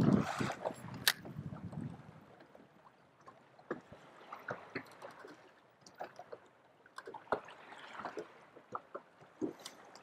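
Small waves lapping and slapping against a boat's hull, faint, with short irregular splashes and ticks. A louder sound dies away over the first two seconds.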